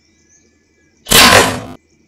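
Compound bow shot: a single sudden, loud snap of the released string about a second in, dying away over about half a second and then cutting off abruptly.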